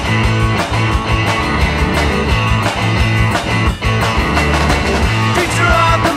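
Rock song with electric guitar and drums keeping a steady beat.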